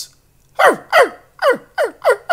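A small animal's cries played as a sound effect: four quick, high cries in a row starting about half a second in, each falling sharply in pitch.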